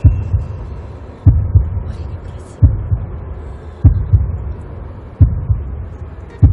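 Deep, heartbeat-like double thumps repeating evenly about every 1.3 seconds, a bass pulse laid over the video's intro.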